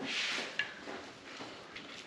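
Soft rustling and handling noise from hands working a raw stuffed steak roll on a sheet pan, with a short hiss at the start and a couple of faint clicks, one about half a second in and one near the end.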